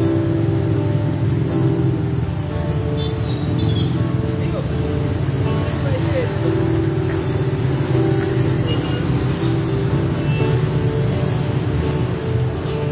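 Acoustic guitar playing slow, sustained chords, with street traffic running underneath.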